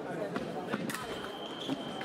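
A few sharp knocks from the sabre fencers' footwork and blades, then about halfway in the electric scoring machine's steady high beep sounds and holds, signalling that a touch has registered.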